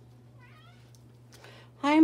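A house cat meowing: a faint short meow about half a second in, then a loud drawn-out meow starting near the end.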